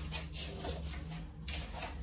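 Quiet room tone with a low steady hum.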